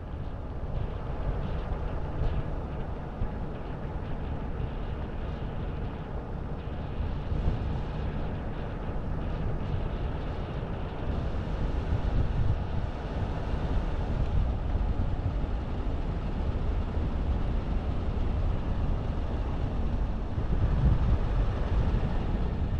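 A vehicle driving steadily along a road: an even, low rumble of engine and road noise that goes on without a break.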